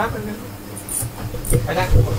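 Children's voices speaking in a small room, with two brief high squeaks, one about a second in and another half a second later.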